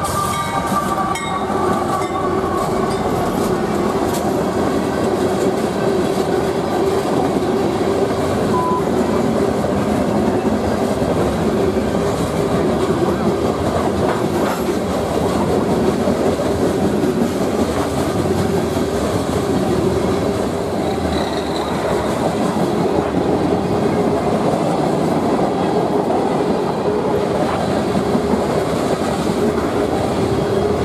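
CSX mixed-freight (manifest) train passing at speed: a steady, loud noise of steel wheels rolling on the rails as covered hoppers and tank cars go by. The locomotives' engine sound fades out right at the start.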